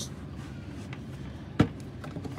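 Small Coleman plastic cooler being handled, with one sharp plastic knock about one and a half seconds in and a fainter tick before it.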